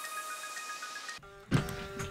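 Electronic outro music dies away with a few held tones. About one and a half seconds in, an electric guitar is struck and its note rings on.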